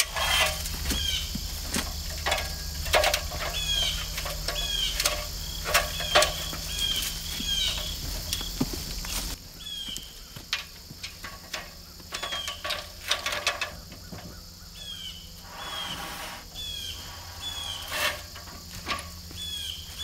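Aluminium extension ladders being handled and shifted through wooden framing: scattered sharp metallic clanks, knocks and rattles, with a short high-pitched chirp recurring about every second. A low steady hum underneath drops away about nine seconds in.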